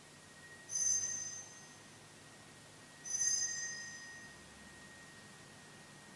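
Altar (Sanctus) bell rung at the elevation during the consecration of the Mass: two bright strikes a little over two seconds apart, each ringing out and fading over about a second.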